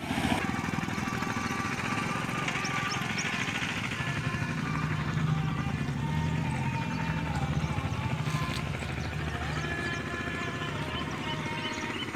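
A small engine running steadily, under background music. Short high chirps come in near the end.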